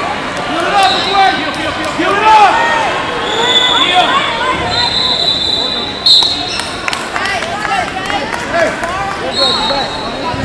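Wrestling shoes squeaking on the mat during a scramble, many quick chirps, with a referee's whistle blown in two held blasts in the middle and another near the end as the action is stopped.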